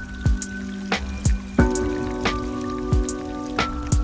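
Outro music: held synth chords over a steady beat of deep kick drums, about three beats every two seconds, with light cymbal ticks.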